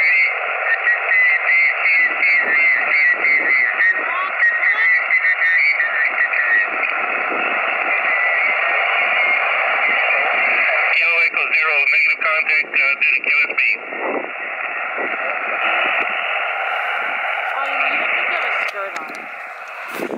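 Yaesu FT-817ND portable transceiver's speaker playing 20-meter single-sideband reception: a steady hiss of band noise with the voices of distant stations coming through it.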